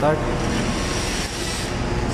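Steady low machinery and ventilation hum of a ship's emergency generator room, with a faint thin high whine through the middle; the emergency generator itself has not yet started.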